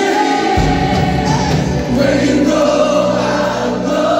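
Live Christian worship music: several singers over a band of drums, electric and acoustic guitars and keyboard. The low bass end comes in about half a second in.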